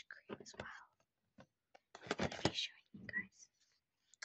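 A girl whispering close to the microphone in short phrases with pauses between them.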